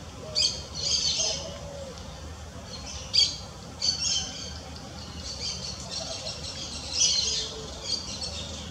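Harsh bird squawks in several short bursts, the loudest about three seconds in and again near the end, with a faint low hooting note in the background.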